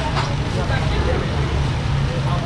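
Busy market background: scattered distant chatter over a steady low rumble, with a brief rustle or clatter right at the start.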